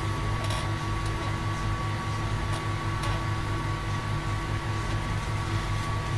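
A steady machine hum with a thin high tone running through it, broken by a few faint clicks.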